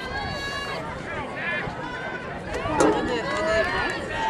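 Spectators yelling and cheering runners on, several voices overlapping, with one long drawn-out shout at the start.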